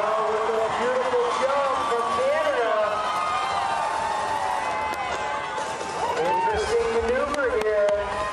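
Crowd of spectators cheering, with several voices shouting and whooping over one another.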